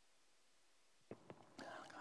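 Near silence with room tone, then about a second in two faint short clicks, and near the end a man's voice starting to speak.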